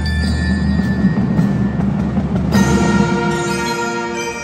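Marching band music: low sustained notes with percussion, then a loud held brass chord comes in about two and a half seconds in.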